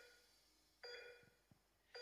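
Near silence in a break of a pop song's backing track, with three faint, short bell-like electronic notes about a second apart.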